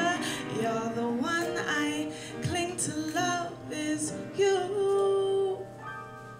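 A woman singing a slow soul love song live, accompanied on piano, holding one long note about four and a half seconds in.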